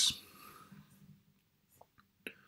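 The end of a spoken word, then near silence: faint room tone with a couple of very faint short ticks.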